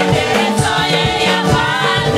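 Gospel praise-and-worship music: a lead singer and a choir singing together over instrumental backing with a steady beat.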